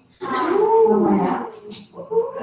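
A single drawn-out vocal call, its pitch rising and then falling over about a second.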